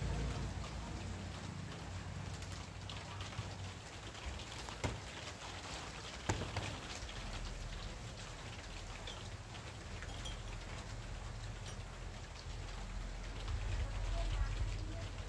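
Rain falling as a steady fine pattering, with a low rumble underneath and two sharp clicks about five and six seconds in.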